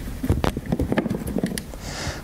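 Irregular clicks, taps and rubbing as a round LED lamp unit is handled and pushed into its rubber housing in a vehicle body panel.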